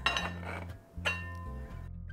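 Two light metallic clinks about a second apart from stainless steel bench scrapers being handled and set against each other or the work surface, over soft background music.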